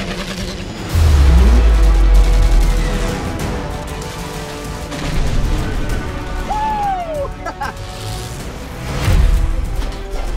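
Trailer soundtrack of dramatic music mixed with aerial combat effects: machine-gun fire, a deep boom about a second in, a brief arcing whine in the middle, and another heavy hit near the end.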